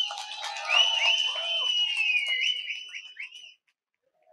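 A crowd whistling: several shrill whistles overlap, gliding up and down in pitch, then die away about three and a half seconds in.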